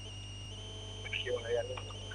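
Steady electrical hum with thin, high, constant whining tones on an open telephone line, and a faint voice briefly about a second in.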